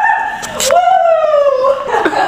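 A high-pitched voice holding a note, cut by a sharp click about half a second in, then one long drawn-out cry that slowly falls in pitch and stops near the end.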